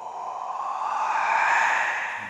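A breathy whoosh that swells for about a second and a half, climbing slightly in pitch, then fades.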